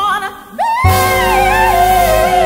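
Female vocalist singing live with a jazz band and string section, her voice wavering with vibrato. The accompaniment nearly drops out for a moment, then the full band comes back in a little under a second in as she slides up into a long held note.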